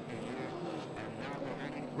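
A damaged late model stock car's V8 engine running at low speed as the car rolls slowly off the track, heard faintly over steady track background noise.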